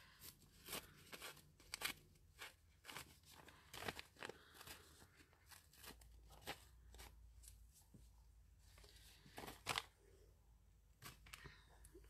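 Faint crackling and rustling of thin rice paper being handled and torn along its border by hand: a scatter of short, irregular crinkles.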